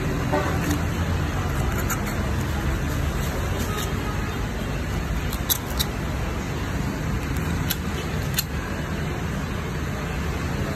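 Steady road-traffic noise, a low, even rumble, with a few short sharp clicks a little past halfway through.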